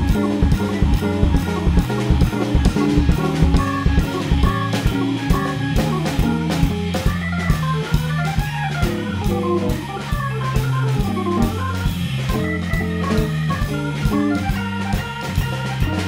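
Jazz organ trio playing live: a Hammond-style electric organ takes the lead, with archtop electric guitar and a drum kit keeping time.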